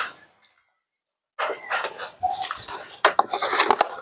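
About a second of dead silence, then a run of irregular knocks and clicks.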